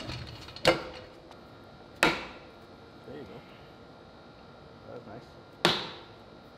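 Three sharp knocks on the metal housings of an RX-8 rotary engine being assembled, each with a brief ringing tail, spaced a second or more apart.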